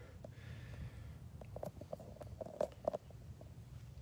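Quiet open-field ambience: a faint steady low rumble with a few soft ticks and rustles in the middle.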